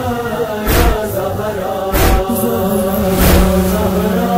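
Noha recitation between verses: chanted vocals holding long notes over a deep, steady thump about every second and a quarter, the beat of the lament.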